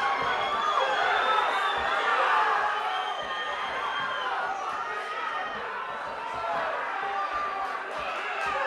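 Small crowd of spectators shouting and cheering during the fight, many voices yelling over one another without a break.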